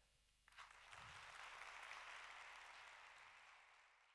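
Faint audience applause that starts about half a second in, holds steady, and fades out near the end.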